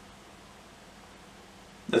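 Quiet room tone with no distinct sound; a man's voice starts just at the end.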